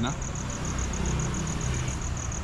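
Night insects chirping in a fast, even high-pitched pulse, about eight a second, over a low steady rumble.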